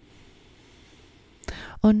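A faint, steady outdoor background hiss during a pause in guided breathing. About a second and a half in comes a short breathy sound from the instructor drawing breath, then a spoken word.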